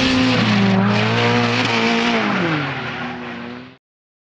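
Nissan 180SX drift car's SR20DET engine held high in the revs, its pitch dipping and rising as it slides, over loud tyre squeal from the spinning rear tyres. The sound cuts off suddenly near the end.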